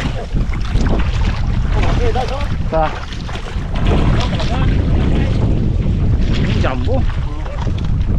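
Wind buffeting the microphone with a heavy rumble, over water splashing and sloshing as people wade knee-deep and work a fishing net by hand.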